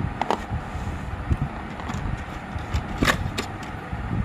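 Light clicks and taps of plastic markers being handled and set down on cardboard, the sharpest knock about three seconds in, over a steady low background rumble.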